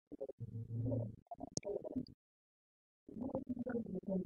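A muffled, dull-sounding voice with almost no treble, in two stretches broken by about a second of dead silence in the middle.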